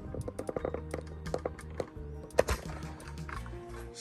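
Background music with steady held notes, under a run of small clicks and knocks from a phone being taken off its tripod and handled, with one sharper knock about halfway through.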